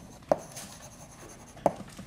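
Chalk writing on a blackboard: a sharp tap as the chalk hits the board about a third of a second in, a faint scratchy stroke, and another tap near the end.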